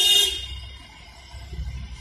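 A vehicle horn gives one short honk that cuts off about half a second in. It is followed by the low, steady rumble of vehicle engines passing on the street.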